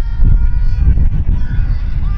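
Wind rumbling on the microphone, with faint distant calls above it.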